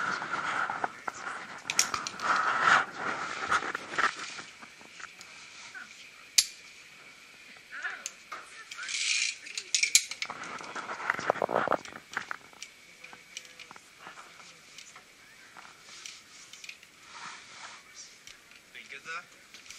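Steel carabiners and a zipline trolley pulley clinking and rattling as they are clipped onto a steel cable, with handling rustle and a few sharp clicks.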